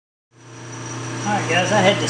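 Silence, then a steady low machine hum with a faint high whine fades in about a third of a second in. A man's voice starts over it about a second and a half in.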